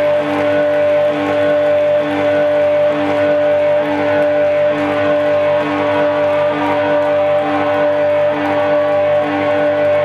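Live rock band music played loud through the venue PA, with no singing: a high note held steadily over a lower note that pulses about once a second.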